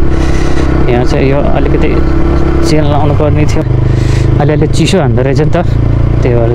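Motorcycle engine running steadily while riding, its note shifting a little before the middle with a brief dip just after, under a man's voice talking in snatches.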